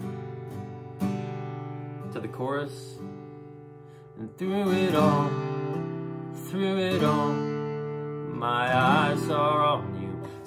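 Acoustic guitar strumming chords in the key of G, each strum left to ring and die away before the next, with a voice singing along softly without clear words.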